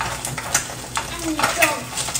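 Eggs sizzling in a frying pan while a utensil stirs and scrapes them, clicking against the pan several times.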